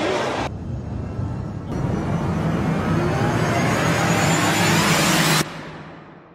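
Intro transition sound effect: a whooshing riser that swells and climbs in pitch for about four seconds, then cuts off abruptly near the end.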